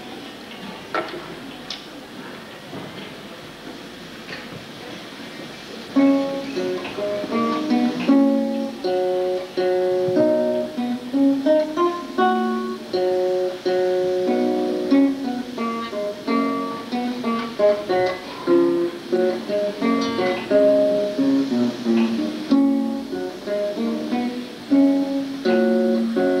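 Solo classical guitar: a few seconds of quiet room noise with a couple of small knocks, then, about six seconds in, a piece begins, played fingerstyle in separate plucked notes and chords.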